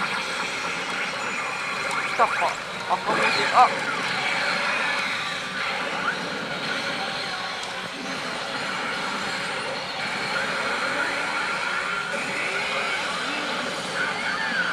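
Pachinko machine electronic sound effects over the steady din of a pachinko parlor, with a few loud, sharp bursts of effects between about two and four seconds in.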